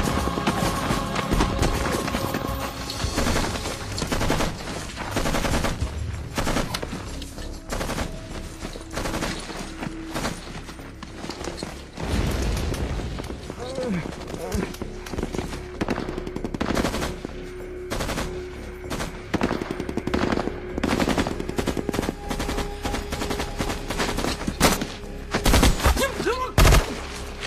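Film battle soundtrack: repeated bursts of machine-gun and rifle fire, many sharp shots in quick succession, going on throughout.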